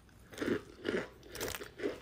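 A person biting and chewing a chunk of compressed cornstarch: about four crunches, roughly half a second apart.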